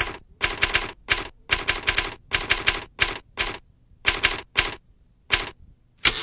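Typewriter typing: keys struck in short runs of quick strikes, about two runs a second with brief gaps between them.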